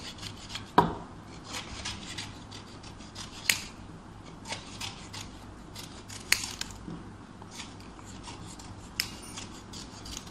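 Small scissors snipping paper into a plastic bowl: irregular sharp snips over a soft rustle of paper, with a few snips louder than the rest.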